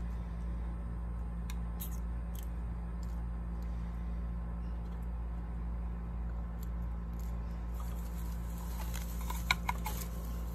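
A steady low hum, with a few faint clicks early on and a quick run of small sharp clicks near the end.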